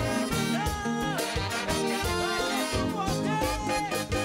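Haitian konpa band playing live: a horn section of trumpet and saxophones plays a melody of held, slightly scooped notes over bass and drums.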